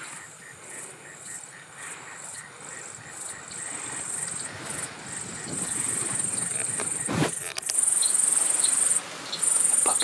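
Insects trilling in a high, steady buzz that swells much louder in two long stretches over the last three seconds, with a brief dip between them. A single sharp knock sounds about seven seconds in.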